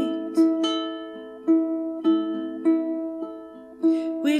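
Caramel CT102A tenor ukulele playing an instrumental passage: chords struck about once a second, each left to ring and fade before the next.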